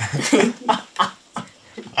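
A woman and a man laughing together in several short, breathy bursts.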